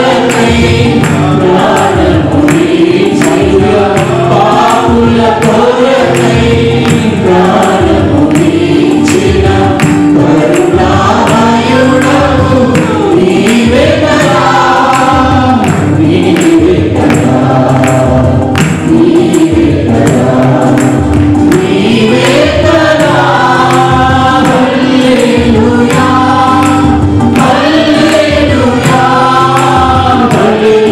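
A mixed choir of men and women singing a Telugu Christian praise song through microphones, over music with a steady beat.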